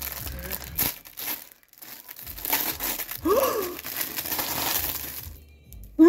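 Gift wrapping paper being torn open and crumpled by hand: an irregular run of crinkling and ripping that dies away near the end.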